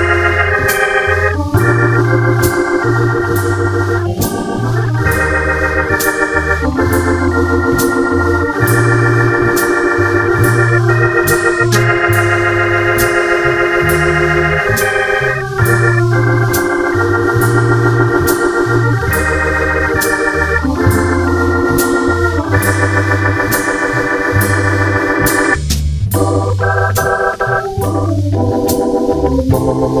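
Hammond B3 tonewheel organ through a Leslie speaker playing a slow jazz ballad: sustained chords over a bass line that moves about once a second. Drums keep a steady, light cymbal beat underneath.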